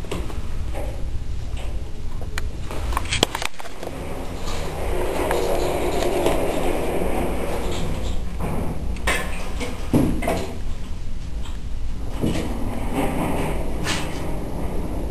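Ferrets scuffling on a hard speckled stone floor: claws scrabbling and skidding as they wrestle and chase, with a few sharp knocks and a constant low rumble underneath.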